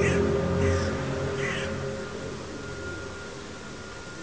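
A low, droning hum of several held tones, the kind of 'strange sound' reported in the sky over the city, fading steadily away. Crows caw several times over it in the first couple of seconds.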